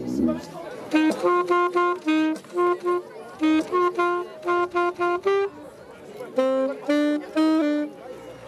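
Saxophone playing a tune of short, detached notes, with a brief break a little past halfway before the melody picks up again.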